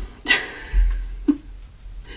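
Handling noise of a stiff paper card being moved and rustled, with a short rustle about a quarter second in and a low bump against the desk or microphone about a second in.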